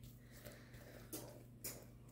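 Mostly quiet: a spatula folding thick brownie batter in a glass mixing bowl, with two faint clicks of the spatula against the glass about a second in and again half a second later.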